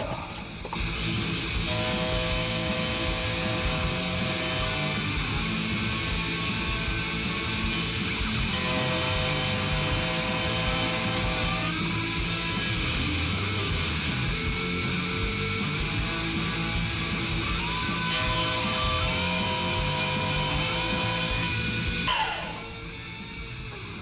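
Manual milling machine's cutter taking a pass across 5160 steel as the table is hand-fed: a loud, steady grinding hiss that starts about a second in and stops about two seconds before the end.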